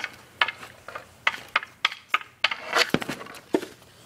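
Hockey stick knocking against the puck while stickhandling and shooting: a run of sharp clacks, about two a second, with one heavier knock about three seconds in.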